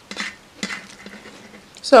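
Two short, crisp crackles of iceberg lettuce cups and chicken filling being handled with the fingers, one about a quarter of a second in and one about two-thirds of a second in. Near the end a short spoken word, louder than the crackles.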